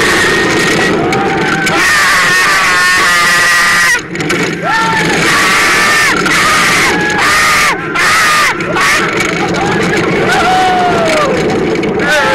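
Two riders on the iSpeed magnetic-launch roller coaster yelling and whooping again and again over the loud, steady rush of the moving ride, with a short lull just before four seconds in.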